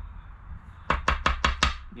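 Poker chip scratching the coating off a scratch-off lottery ticket: about six quick strokes in under a second, starting about a second in.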